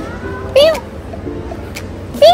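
A person imitating a cat: one short meow about half a second in, rising then falling in pitch.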